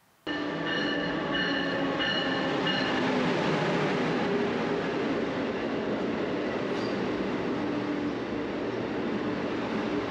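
Moving Amtrak passenger train heard from inside the car: a steady rumble and rush of running noise, with a few thin high tones in the first three seconds.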